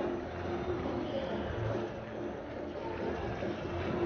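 Steady background murmur of a large crowd in an arena, with no announcing over it.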